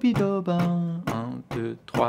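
A man scat-singing the rhythm of a short jazz phrase in quick, pitched syllables.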